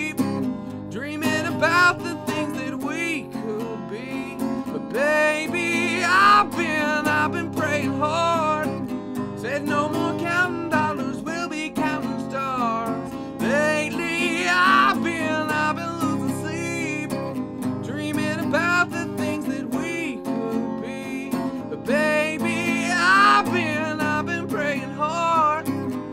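A man singing over a strummed acoustic guitar. The vocal holds three long, wavering notes about eight seconds apart.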